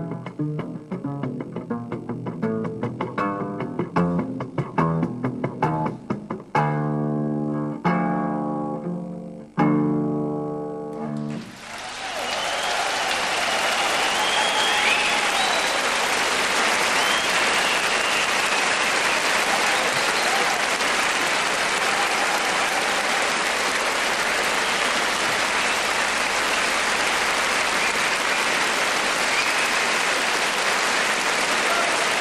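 A jazz big band ends a tune: quick plucked double-bass notes, then full-band chords struck and held, the last one cut off about eleven seconds in. A concert audience then applauds steadily for the rest of the time.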